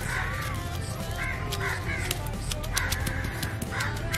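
Stone pestle pounding whole spices in a heavy stone mortar, a run of short, sharp, irregular knocks. Crows caw several times in the background.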